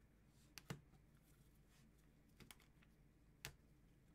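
A few faint, scattered clicks of hard clear plastic card holders knocking together as a stack of them is handled and set down; otherwise near silence.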